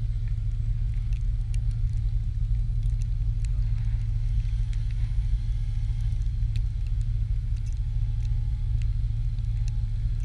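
Steady low rumble of wind on the microphone, with the faint steady whine of a small electric RC helicopter in flight.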